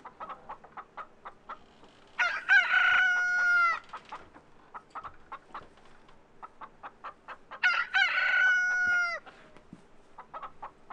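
A rooster crowing twice, each crow about a second and a half long and falling away at the end, with a run of short clicking sounds in between.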